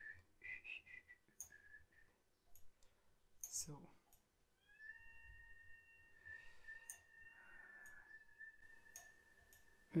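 Faint computer mouse clicks amid near silence. From about halfway through, a faint steady high tone is held for about five seconds.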